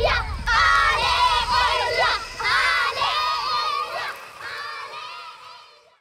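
A group of children shouting and cheering excitedly, many high voices overlapping, fading out over the last couple of seconds.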